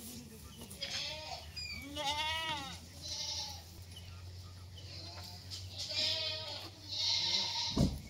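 Ganjam goats bleating, several wavering calls one after another, the longest about two seconds in.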